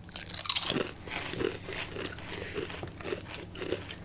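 Several people biting into potato crisps at the same moment and chewing them close to the microphones. A burst of crisp crunches comes at the first bite, then steady chewing crunches about three or four a second.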